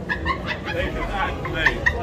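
A startled woman giving short, high-pitched shrieks of fright, several quick cries in bursts, with a second cluster near the end.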